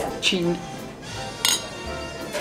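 A single sharp clink of tableware about one and a half seconds in, ringing briefly, over background music.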